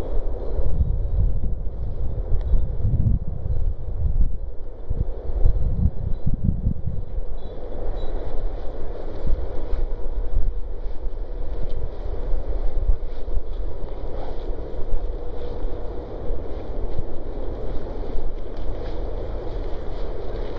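Wind buffeting the microphone outdoors: an uneven, gusting low rumble, heaviest in the first seven seconds or so.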